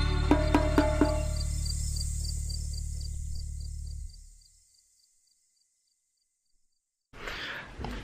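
Intro music, a steady low drone under chiming notes, fading out over the first four seconds or so, followed by a couple of seconds of silence and then a burst of room noise near the end.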